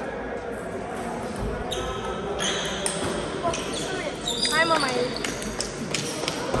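Table tennis balls clicking sharply off bats and tables in a reverberant sports hall, with voices in the background.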